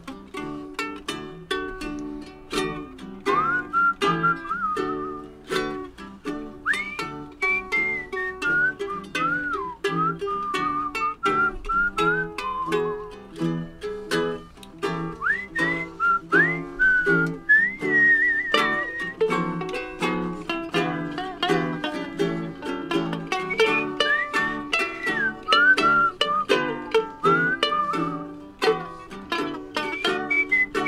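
Ukulele strummed in a steady rhythm with a whistled melody over it, the whistling coming in about three seconds in and returning in several phrases.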